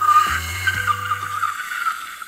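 A woman's long, high-pitched squeal of delight, held for nearly two seconds, over background music whose bass line drops out about one and a half seconds in.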